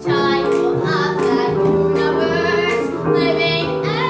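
A girl singing a song in a musical-theatre style, her voice holding and bending notes over instrumental accompaniment.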